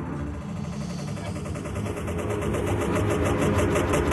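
Dark film-soundtrack background audio: a low rumble under a fast, even pulsing that builds steadily louder.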